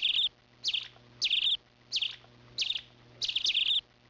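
A small songbird chirping over and over: about six short, high calls, each sweeping downward, roughly every two-thirds of a second, the last two close together.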